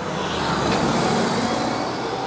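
City bus pulling away and driving past close by. Its engine and tyre noise swells through the first second and then eases off, with a steady low hum under it.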